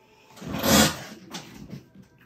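A brief rustling, sliding swell of hands handling embroidery thread and fabric, with a few fainter rustles after it.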